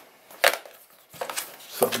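Small cardboard product box being closed by hand: one sharp tap of cardboard about half a second in, then faint handling sounds as the lid goes on.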